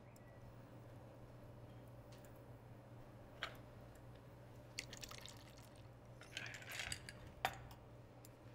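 A stirred martini pouring in a thin, faint trickle from a mixing glass into a cocktail glass, with drips and a few light clinks of glass or ice about halfway through and near the end, over a low steady room hum.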